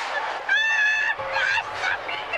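A gull calling: one long call about half a second in, followed by a few short calls.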